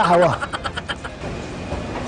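A quick patter of hand claps, about ten a second, that dies away about a second in. Steady outdoor street and traffic noise follows.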